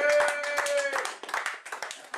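A small audience clapping, the claps thinning out toward the end, with a voice calling out briefly in the first second.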